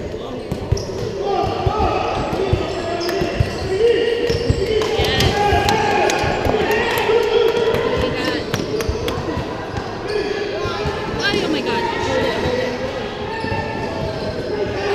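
Basketball game sounds in a large gym: a ball bouncing on the court with repeated short knocks, under the indistinct voices of players and spectators calling out throughout.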